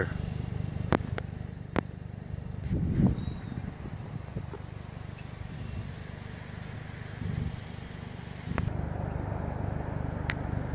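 Low, steady rumble of a motor vehicle running, with a few sharp clicks, the first about a second in and another near the end.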